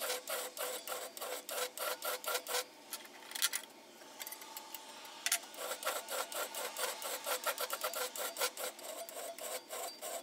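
Hand file stroking along the edge of an eighth-inch-thick A2 tool steel plate, in regular strokes about three a second that ease off for a couple of seconds in the middle. The rough saw-cut edge is being filed square to the plate's ground edge.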